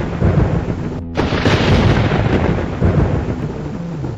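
A loud, continuous rumbling noise, with a brief break about a second in.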